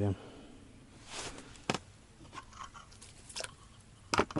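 Quiet handling noises: a short rustle about a second in, then a single sharp click, with faint low voices in the background.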